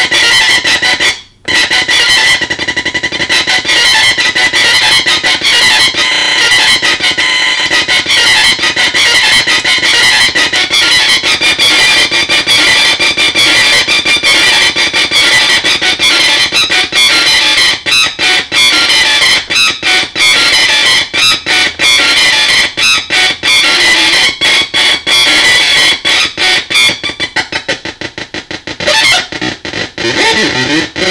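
Synthrotek Mega 4093 NAND-gate drone synth, four 555 timers driving a 4093 NAND chip, putting out a loud, distorted, buzzing drone, its pitch and gating stepped by control voltage from a step sequencer. It cuts out almost completely about a second in, and in the second half it breaks into rapid stuttering gaps.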